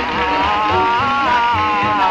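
A rock and roll vocal group singing held notes that glide up and down over a steady beat.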